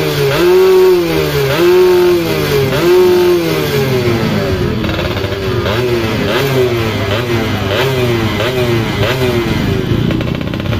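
Dirt bike engine being revved in blips. There are four strong rev-ups about a second apart, then lighter, quicker blips a little under a second apart.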